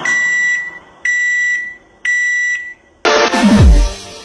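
Microwave oven finishing beeps: three long, steady beeps about a second apart. About three seconds in, loud electronic dance music with deep, downward-sliding bass notes cuts in.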